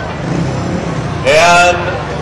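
Speedway PA announcer's voice, one drawn-out word about a second and a half in, over a steady low rumble of stadium background noise.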